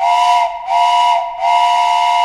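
Steam whistle blown three times, two short blasts and then a longer one. Each blast sounds a chord of two close tones over a hiss of steam.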